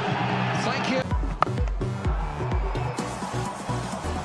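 Background music: sustained tones for the first second, then the audio cuts and a deep, regular bass beat takes over, with a single sharp click just after the cut.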